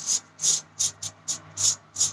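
Safety razor with a Treet double-edge blade scraping stubble from the upper lip through shaving lather, in quick short strokes, about seven in two seconds.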